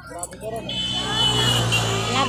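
A motor vehicle engine running close by, growing louder through the second half with a brief rise in pitch, over women's voices at the start.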